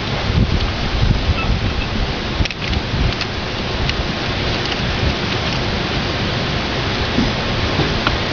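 Steady outdoor hiss with low rumbling gusts in the first few seconds, and a few light clicks as the plastic trimmer head and the metal spanner and Allen key are handled.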